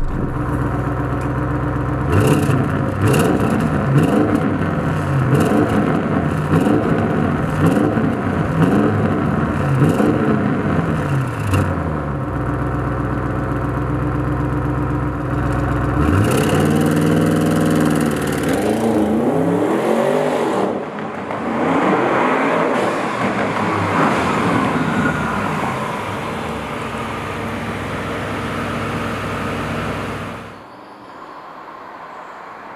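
Audi RS7's twin-turbo V8 revved in quick blips about once a second, each rising and falling, with sharp crackles between them. About halfway through comes a longer rising rev and a few more, then a steadier run that quietens near the end.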